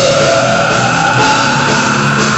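Live metal-hardcore band playing loud: distorted electric guitars and drum kit, with a long sustained note held over the top.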